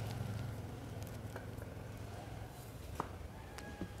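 A low engine hum from a passing motor vehicle fades away over the first two seconds. Then comes quiet background with a few faint clicks, the clearest about three seconds in.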